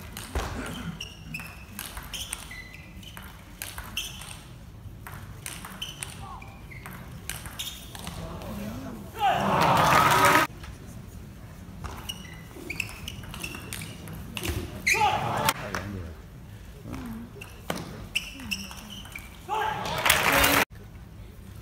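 Celluloid-plastic table tennis ball clicking off bats and table in a rally, sharp and quick. A loud burst of crowd cheering and shouting comes about nine seconds in and lasts over a second, with shorter bursts of cheering around fifteen seconds and near the end, all echoing in a large hall.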